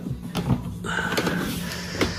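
Plastic toolbox latches unclipping with a few clicks, then the hinged plastic lid being lifted open with a steady rustling scrape. A low steady hum runs underneath.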